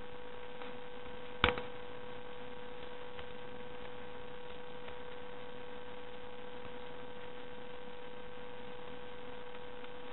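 Steady electrical hum on the recording, with one sharp click about one and a half seconds in and a few faint ticks as scissors cut through folded paper.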